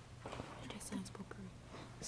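Faint, low-voiced speech: students whispering and conferring among themselves, over a steady low hum.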